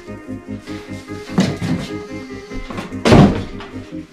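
Background music with a steady beat, and one loud thunk about three seconds in as the boxed tripod or its carrying bag is handled.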